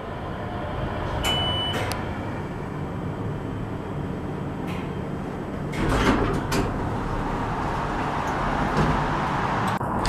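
U.S. hydraulic elevator car descending with a steady low running noise in the cab, and a short electronic beep about a second in. Around six seconds in there is a louder clunk as the car stops and the doors slide open.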